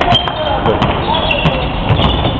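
A basketball being dribbled on a sports hall floor, with voices of players and spectators calling out over it.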